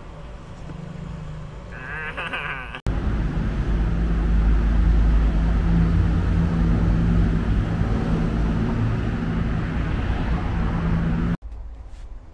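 Loud, steady street noise with the low rumble and steady hum of a vehicle engine running close by; it starts suddenly about three seconds in and cuts off just as suddenly shortly before the end. Before it, a quieter stretch with a brief high, wavering tone.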